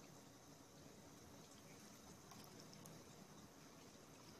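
Near silence: faint room hiss with a few very faint ticks.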